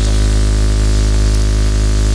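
Steady electrical mains hum with many overtones and a layer of hiss from the public-address sound system, unbroken and loud.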